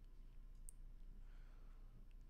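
Near silence: room tone with a faint low hum and a single faint click about two-thirds of a second in.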